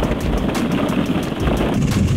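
Hundreds of hollow plastic ball-pit balls pouring from a cardboard box through a car's open sunroof, a dense continuous clatter as they tumble onto the pile of balls inside.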